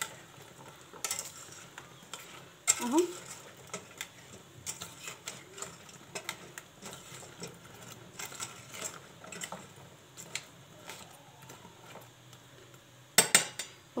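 A kitchen utensil clinking and scraping against a dish now and then as fried dough fingers are turned in syrup. A louder clatter of clicks comes near the end.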